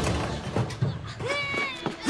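A short, high-pitched, wavering cry, about half a second long and falling slightly at its end, comes near the end. A few light knocks sound in the first second.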